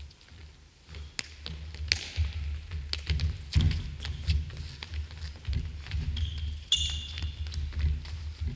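A futsal ball being dribbled and struck on a wooden sports-hall floor, with repeated sharp taps and low thuds from ball touches and footsteps. A short high shoe squeak comes near the end.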